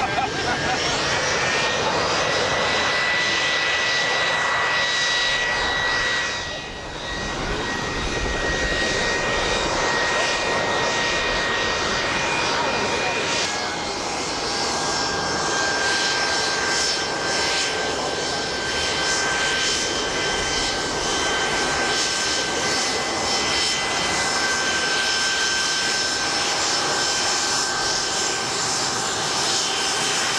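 Gulfstream C-20 jet's twin Rolls-Royce Spey turbofans running at taxi power: a steady high whine over a roar. The whine rises slightly in pitch in the first two seconds, the sound briefly fades about seven seconds in, and the whine steps a little lower about fourteen seconds in.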